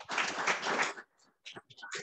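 A short round of audience applause that dies away after about a second, leaving a few scattered claps.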